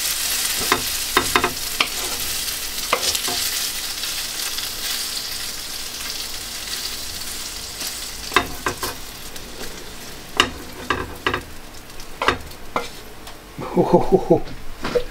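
Browned chicken pieces sizzling in a hot frying pan as they are scraped out into a salad bowl with a wooden spatula. A steady sizzle that slowly fades, with scattered scrapes and knocks of the spatula on the pan, more of them in the second half.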